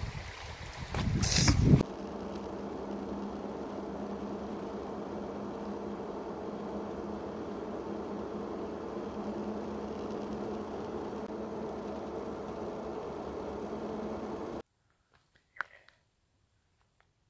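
Steady engine and road noise heard from inside a moving 1996 Mitsubishi Pajero, with a low steady hum; it cuts off suddenly near the end. It is preceded by a short loud rush of noise in the first two seconds.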